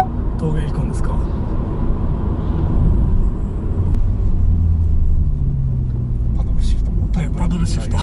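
Cabin noise of a Honda Fit 3 RS (1.5-litre four-cylinder) on the move: a steady low rumble of engine and road noise heard from inside the car.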